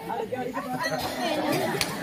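Several people's voices talking over one another, with a sharp click near the end.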